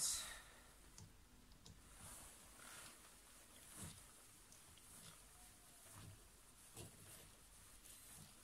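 Faint, scattered clicks and scrapes of a hand screwdriver turning a self-tapping screw into a metal strip, a few seconds apart, after a short louder sound right at the start.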